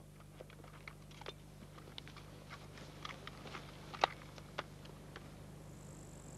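Faint rustling and scattered clicks as soldiers drop into the prone position with Kalashnikov rifles: clothing and gear brushing grass and the rifles' metal parts knocking. Two sharper clicks stand out about four seconds in and a little after. A steady low hum runs underneath.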